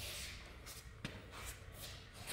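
Faint shuffling and rubbing as a handheld camera is moved around in a small room, with a single click about a second in.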